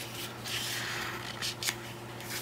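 Hands sliding and rubbing over sheets of double-sided patterned scrapbook paper: a soft papery rustle, with a couple of faint taps about three-quarters of the way through.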